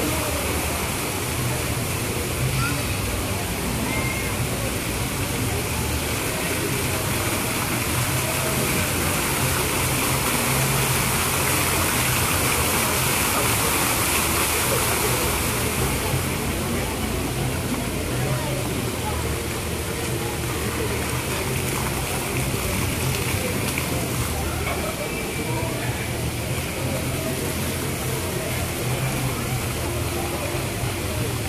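Plaza fountain's rows of water jets splashing down into the pool, a steady rushing of water that is strongest in the middle and eases a little about halfway through as the jets drop lower. Voices of people nearby run underneath.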